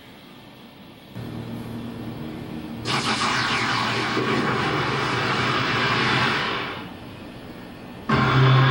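Sound effect of a TV logo intro: a low steady drone comes in about a second in, then a loud rushing whoosh with a falling sweep swells in near three seconds and fades away before the end.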